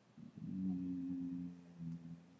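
A man humming a long, level "mmm" with closed lips while thinking, lasting about a second and a half.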